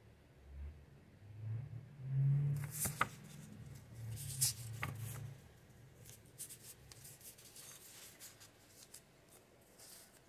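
Quiet shuffling and handling of a tarot card deck: soft rustling with a few sharp card clicks between about three and five seconds in, then faint light ticks.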